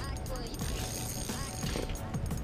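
Faint, indistinct voices over a low steady rumble, with scattered light clicks.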